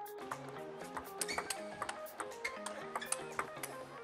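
Background music with a run of steady notes, over the sharp clicks of a table tennis ball striking bats and table in a fast rally, several a second.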